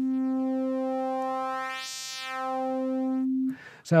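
A software synthesizer's sine-wave oscillator holds one steady note near 250 Hz while its 'silence' waveform modifier, which adds a gap after each wave cycle, is swept up and back down. The pure tone fills with buzzy overtones that peak about halfway through, then it thins back toward a plain sine before cutting off about three and a half seconds in.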